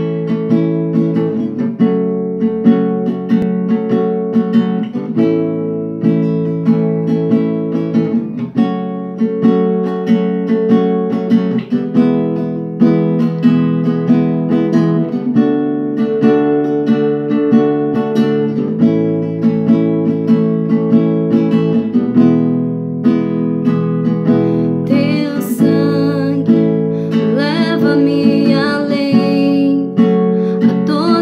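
Classical acoustic guitar strummed in a steady chord pattern. Near the end a woman's voice starts singing over it.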